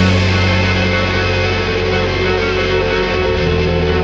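Chapman Stick and electric guitar played through effects processors, holding sustained distorted notes with echo over a steady low bass note, without drum hits; the bass note shifts a little past three seconds in.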